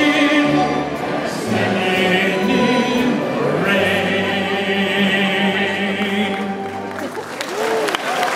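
Audience sing-along with an orchestra, many voices singing the song's closing line and ending on one long held final note that fades near the end.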